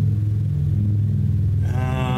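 A deep, steady rumbling tone, followed about one and a half seconds in by a held pitched note with a rich, buzzy tone: a dramatic sound for the reveal of the item just pulled from the box.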